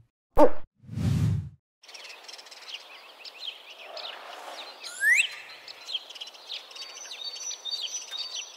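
A brief title sting in the first second and a half: a short sung note, then a low whoosh. After that, a steady ambience of small birds chirping and twittering, with one rising whistle about five seconds in.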